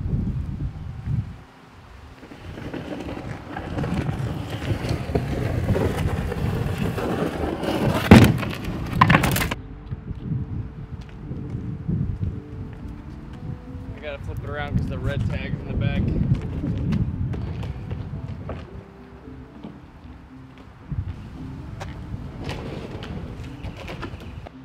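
Scraping and rustling as a canoe is handled, with two loud knocks about eight and nine seconds in; from about ten seconds on, background music with singing.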